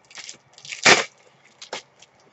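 Packaging being handled and opened: a run of short crinkling crackles, with one loud crackle about a second in.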